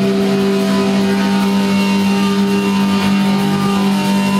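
Live punk band's electric guitars holding one loud, steady droning note.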